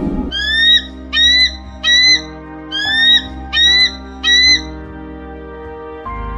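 A bird calling: six short, rising squawks in two sets of three, over steady background music.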